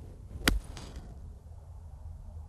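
A golf club striking a ball once, a single sharp click about half a second in with a brief ring after it, over a low outdoor background rumble.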